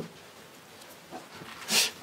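A quiet pause with faint room tone, then a short breathy sound near the end as a person draws breath to speak.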